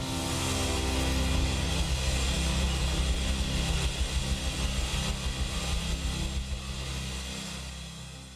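A live band's final chord held and ringing out, with low bass notes under a hiss of cymbal or room noise, slowly fading away over the last couple of seconds.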